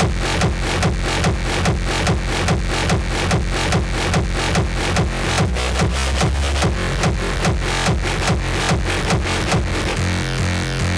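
Electronic dance music from a DJ set, played over a club sound system: a steady, fast kick-drum beat over heavy bass.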